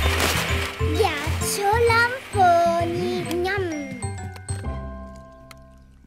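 Playful cartoon music with sliding, sing-song notes over a low pulsing beat, ending in chiming tones that fade away. A brief whir of noise at the very start comes from the cartoon blender crushing ice.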